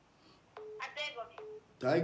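Snatches of speech heard over a phone call, with two short steady tones between syllables and a voice starting up loudly near the end.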